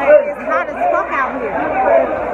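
Loud overlapping chatter: several voices talking at once, none clearly picked out.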